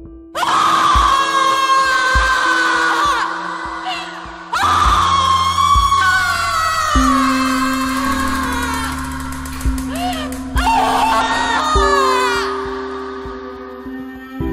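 A woman screaming in three long screams, each falling in pitch, over a sustained music score with low drum thuds.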